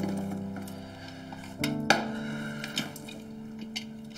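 Soft background music of plucked guitar and held notes, with one sharp click about halfway through and a few lighter clicks after.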